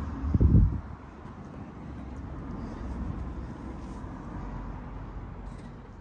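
A brief loud low thump about half a second in, then a steady low outdoor rumble.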